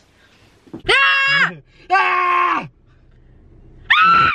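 A woman's voice making two drawn-out, wordless sounds, each under a second long, the second a little lower in pitch.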